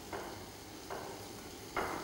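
Faint handling sounds of a cloth spice bundle being tied shut with twine on a wooden board: a few soft, short rustles about a second apart over a quiet background.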